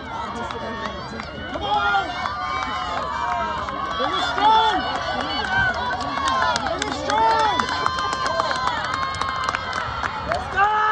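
Trackside spectators shouting and cheering a runner on, many voices overlapping, with the loudest yells about halfway through and again a few seconds later.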